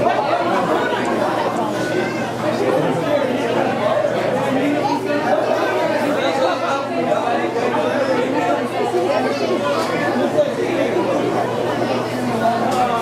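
Crowd chatter: many people talking over one another, with no single voice standing out.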